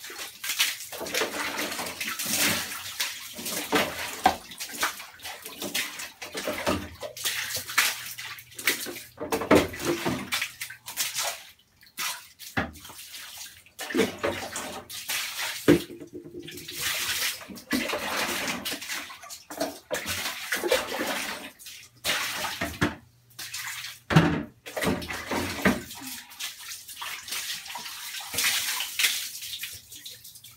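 Water from plastic buckets splashing and sloshing onto a tiled bathroom floor during cleaning, in irregular bursts with short pauses.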